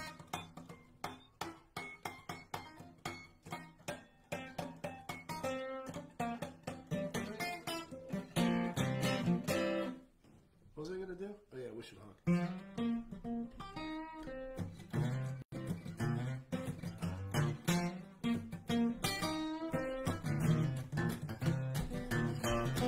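Solo acoustic guitar strummed in a steady rhythm.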